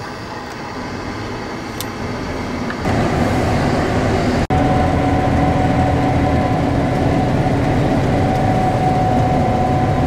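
Combine harvester running, heard from inside the cab: a steady machine drone that steps up louder about three seconds in, with a steady whine joining and holding as the machine cuts soybeans with its draper head.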